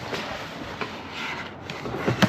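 Rustling and scraping of a box being opened and its packaging handled, with a couple of light clicks.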